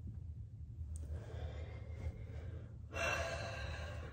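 A woman exhaling in a long sigh about three seconds in, over a low steady hum; the sigh goes with her nervousness.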